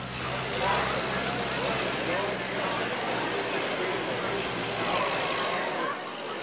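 Model T Ford race car's four-cylinder engine running steadily as it comes around the dirt track, with faint crowd voices behind it.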